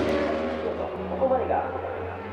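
Engine of a 1000 cc JSB superbike fading as it rides away around the circuit, with the engine sound of approaching bikes still in the background. A person's voice is heard briefly about a second in.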